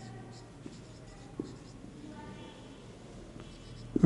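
Marker pen writing on a whiteboard: faint scratchy strokes with a few short squeaks of the felt tip.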